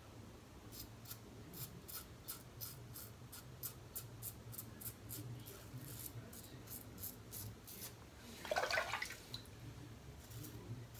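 Merkur 34C double-edge safety razor with a new Polsilver blade scraping through lathered stubble in short strokes, about three quick scratchy rasps a second. Near the end comes a louder burst of noise lasting about half a second.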